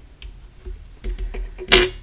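Small craft scissors snipping a thread tail on a paper card, with light clicks of handling, then one sharp click near the end, the loudest sound.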